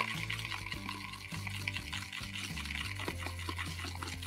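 Thick paint being stirred and swirled with the end of a paintbrush on a plastic plate, mixing red and blue into purple; a faint scratchy, wet stirring over soft background music with low held notes.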